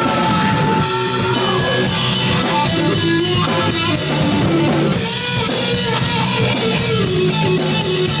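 Live rock band playing an instrumental passage: electric guitars and bass over a drum kit, with cymbal strokes at a steady beat.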